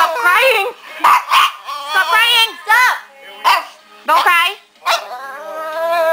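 A Pomeranian crying: a string of drawn-out, wavering whines and yowls, rising and falling in pitch, about half a dozen in quick succession with short breaks, the last one longer.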